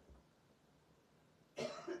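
A man coughs once, sharply, about one and a half seconds in, after near-silent room tone.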